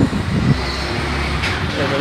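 Steady low rumble of background road traffic, with a brief bit of a man's voice at the very start.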